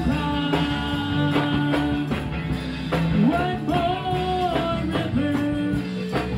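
Live gospel song: women singers hold long notes over a band with keyboard and a steady beat.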